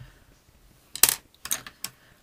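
Small hand modelling tools clattering on a hard work surface as one is set down and another picked up: one sharp click about a second in, then two lighter clicks.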